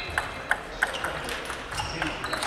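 Table tennis balls clicking sharply against bats and tables, about five irregularly spaced clicks.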